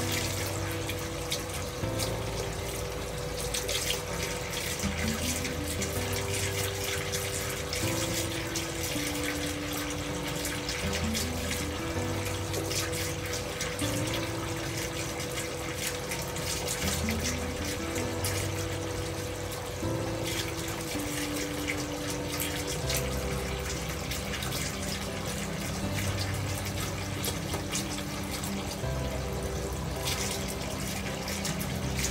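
Water pouring steadily from a bathtub spout at full pressure into a filling tub, an even rushing splash. Gentle music with slow held notes plays along with it.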